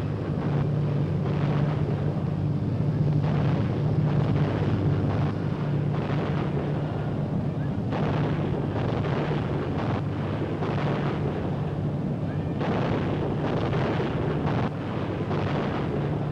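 Dense, continuous anti-aircraft gunfire and explosions from a convoy's guns, shot after shot with heavier volleys every few seconds, over a low steady hum.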